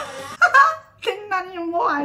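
A woman's excited laughing wail. There is a short loud burst about half a second in, then a long drawn-out cry from about a second in with a wavering pitch.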